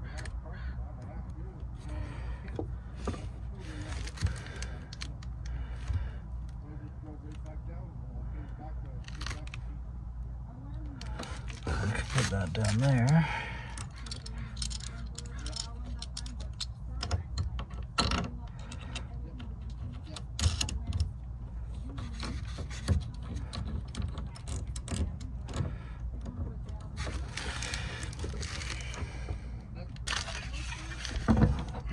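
Scattered small clicks, rustles and scrapes of hands working a cable and its rubber grommet through a hole in a plywood panel, over a steady low hum. About twelve seconds in there is a louder burst lasting a second or so.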